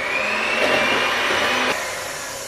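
Electric hand mixer running at speed, its beaters whisking cold milk and whipped-cream powder in a plastic jug: a steady motor whine over the churning of the liquid. The churning thins out about three-quarters of the way through.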